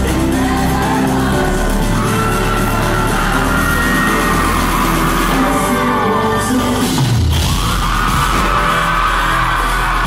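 Loud live pop music over a concert hall's sound system, with singing and a heavy bass beat, and fans screaming over it. A low bass note slides downward about seven seconds in.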